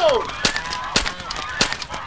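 Three shotgun shots, a little over half a second apart, each sharp with a short echo.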